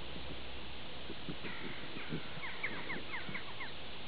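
A dog sniffing and nosing into a mole hole in the grass, a string of short low snuffles. From about a second and a half in until near the end, a bird calls a quick series of short, falling chirps.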